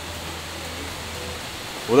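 Steady rushing of a mountain stream.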